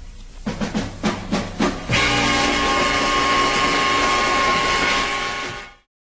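Closing bars of a Mandarin pop song: a quick drum fill of several strokes, then the band's final chord held for a few seconds before it fades out sharply.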